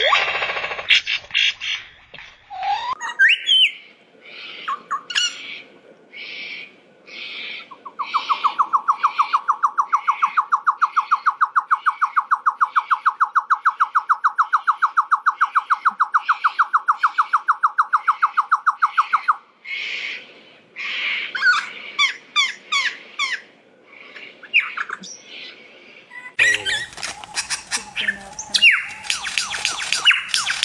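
Male superb lyrebird singing a varied song of loud calls. In the middle comes a long, very rapid, even trill of clicks, lasting about ten seconds, under higher notes repeated about twice a second.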